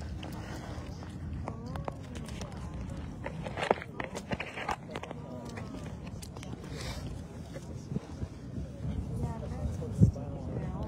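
Indistinct voices of people talking in the background over a steady low rumble. Several sharp knocks and clicks of the camera being handled come in the middle, the loudest about four seconds in.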